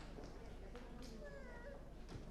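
Faint murmur and rustle of a hall audience, with a few soft knocks and a brief high-pitched voice about a second and a half in.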